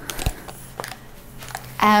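Handling noise of a DSLR camera with a flash trigger on its hot shoe being lifted into shooting position: a soft low knock about a quarter second in, then a few faint clicks.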